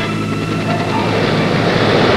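Background music fading out, then the loud, even rushing noise of a helicopter's engine and rotor swelling up about a second in.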